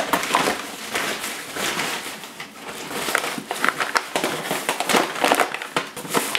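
Plastic shopping bag and the flour bag inside it rustling and crinkling as they are handled, a dense run of irregular crackles.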